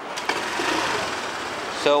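Honda PCX150 scooter's small single-cylinder engine idling with a steady, fast mechanical patter.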